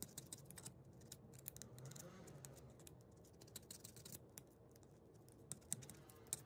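Faint, irregular clicking and scratching of a hobby knife blade picking at and cutting into polystyrene, as the stones of a model wall are separated and their corners trimmed, with a couple of slightly sharper clicks near the end.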